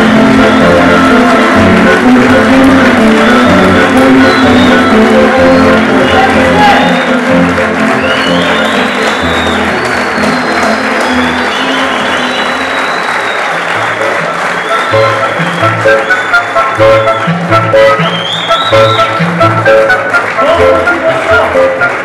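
Theatre audience applauding loudly over music, with voices mixed in; a regular beat comes into the music about two thirds of the way through.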